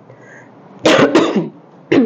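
A woman coughing: two coughs close together about a second in, then a shorter one near the end.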